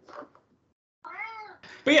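A domestic cat meows once about a second in, a single call that rises and then falls in pitch.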